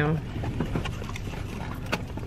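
A few faint crinkles and clicks of a paper-wrapped fast-food chicken sandwich being handled, over a steady low rumble inside a car.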